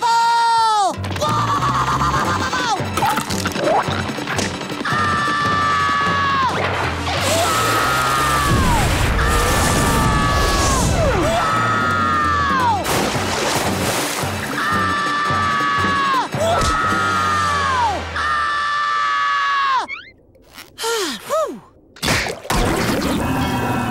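SpongeBob screaming over and over, about eight long cartoon screams, each held high and then dropping off in pitch. Crashes and background music play underneath, and the screams stop about two seconds before the end.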